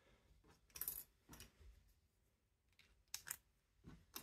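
Light clicks of 3D-printed plastic cam pieces being handled and dropped onto a keyed shaft: a few about a second in and a sharper pair past three seconds, with near silence between.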